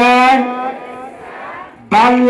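A man's voice amplified through microphones and a loudspeaker, calling out in a long, held, chant-like tone that trails off after about a second, with the next call starting at the end.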